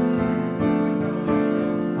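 Piano accompaniment playing sustained chords in a jazz-standard ballad, with a new chord struck about half a second in and another just past a second, each left ringing.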